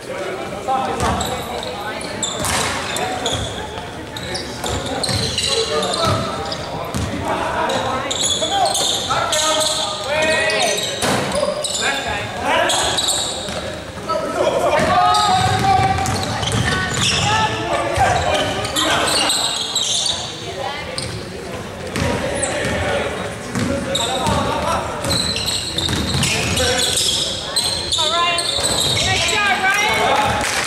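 Basketball dribbled on a hardwood gym floor amid short, high sneaker squeaks and players' shouts, ringing in a large gymnasium.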